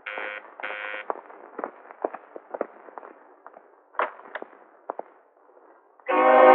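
Electric doorbell buzzing twice in short bursts, followed by a scattering of light taps and clicks.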